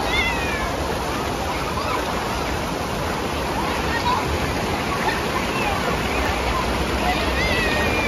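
Steady rush of river water pouring over a low rock ledge into a pool. High calling voices break through briefly just after the start and again near the end.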